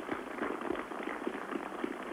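Crowd of onlookers clapping and murmuring: a dense patter of many small claps over a background of chatter.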